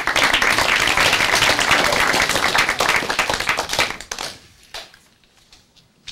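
Audience applauding, a dense patter of many hands clapping that thins out about four seconds in and dies away soon after.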